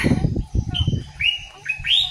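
Birds chirping in a series of short calls that rise in pitch, several in the second half. A burst of low thumping noise comes first, and is the loudest thing near the start.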